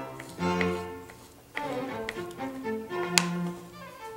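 Background music led by violin and other bowed strings, playing held notes. A few sharp taps stand out over it, the loudest about three seconds in: a knife striking a wooden cutting board while slicing garlic.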